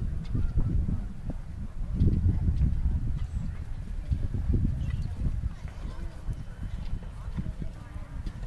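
Hoofbeats of a horse cantering on a sand arena, under a low rumble, growing fainter in the second half.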